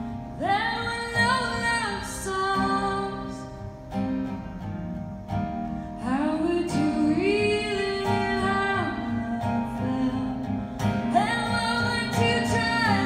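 A woman singing live with acoustic guitar accompaniment, amplified through a stage PA. She sings in phrases with short pauses between them while the guitar carries on underneath.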